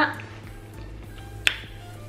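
A single sharp finger snap about one and a half seconds in, over faint background music.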